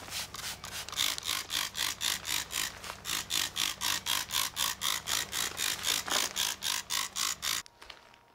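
Plastic trigger spray bottle squirting liquid onto a car's body panel in quick repeated pumps, about three or four sprays a second, each a short hiss; the spraying cuts off suddenly near the end.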